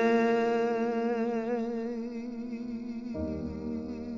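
A male singer holding one long note with vibrato, slowly fading, over a soft backing track. About three seconds in, the accompaniment moves to a new chord with a deeper bass.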